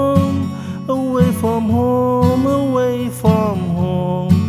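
Acoustic guitar with a capo, strummed in a steady rhythm, with a man singing long held notes and no clear words over it.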